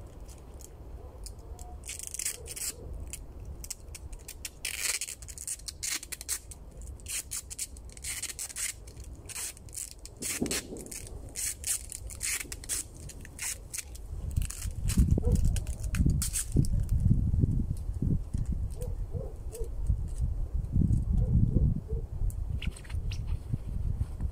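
Adhesive tape pulled off the roll in quick crackling rips as it is wound around the tops of three long poles, through most of the first two-thirds. In the later part, low rumbling thumps and rustling become the loudest sound.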